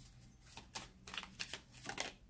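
A deck of cards being shuffled by hand: a faint run of short, irregular riffling swishes.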